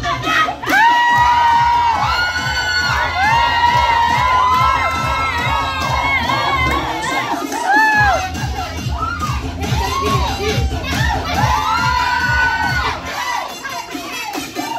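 Audience cheering and shrieking in many high voices over dance music with a steady bass beat. The beat drops out briefly near the start and again about eight seconds in.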